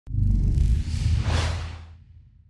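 Logo-intro whoosh sound effect over a deep low rumble. It opens on a sharp click, the hiss swells a little past halfway, and the whole sound fades away toward the end.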